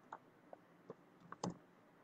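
About five faint, scattered keystrokes on a computer keyboard.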